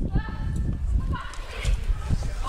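People running on pavement: quick, uneven footfalls with low thumps, and brief voices shouting over them.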